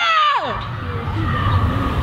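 A person's loud wordless yell cheering on a sprinter, dropping in pitch and trailing off about half a second in. After it comes a low steady rumble with faint voices in the distance.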